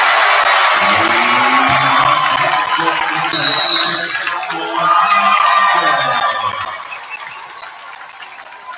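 Gymnasium crowd cheering loudly after a home three-pointer, dying away after about six seconds, with pep-band music underneath. A short referee's whistle sounds about three and a half seconds in.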